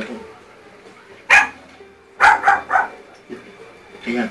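A dog barking: one sharp bark about a second in, then a quick run of three barks just past two seconds.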